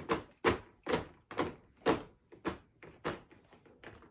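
Baby banging on a plastic highchair tray: about nine sharp knocks, roughly two a second.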